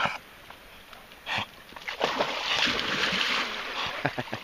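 Water splashing from about two seconds in, as dogs thrash and plunge in lake water around a floating ball. A brief short sound comes about a second in, before the splashing.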